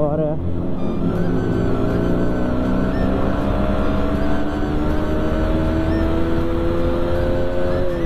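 Sport motorcycle engine pulling hard under acceleration, its note rising steadily for about seven seconds as the speed climbs, then dropping suddenly near the end at an upshift.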